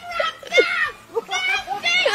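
High-pitched voices shrieking and laughing excitedly, with no clear words.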